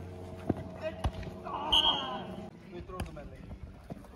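A krachtbal ball thudding on the grass pitch a few times, with players shouting in the middle.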